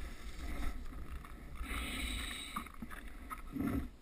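Skeleton sled's runners sliding over the ice track, a low steady rumble with a brief hiss about halfway through and a soft thump near the end.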